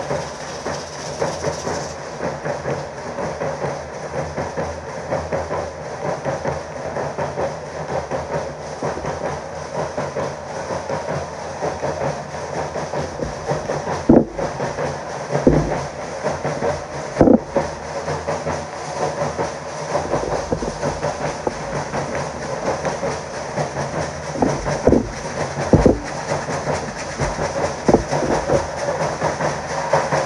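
Large double-headed bass drums of a Mexican danza troupe beating a fast, steady, driving rhythm, with a constant rattling hiss over the beat.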